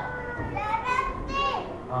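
Several people talking in the room at once, some in high, child-like voices.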